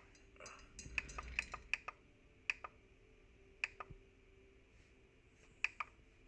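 Clicks from the front-panel display button of an APC Back-UPS Pro BN1500M2 battery backup being pressed again and again, several in quick succession in the first two seconds, then a few single clicks, over a faint steady hum.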